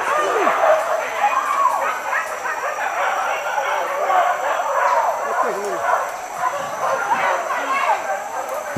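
A pack of hunting dogs yelping and barking without pause, many short high calls overlapping one another.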